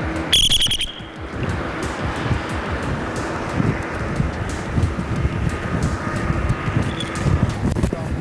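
A short bright electronic stinger chime sounds about half a second in. It gives way to steady street traffic noise from passing cars on a city road.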